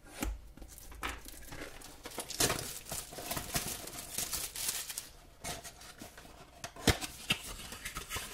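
Plastic shrink-wrap being cut, crinkled and torn off a cardboard trading-card box, then the box's cardboard flap pulled open. The sounds are irregular rustles and scrapes, with one sharp snap near the end.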